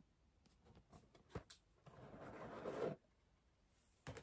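Lid of a red Cartier cardboard jewellery box being worked off: a few small taps and clicks, then a rubbing, sliding sound about two seconds in that grows louder and cuts off suddenly as the lid comes free.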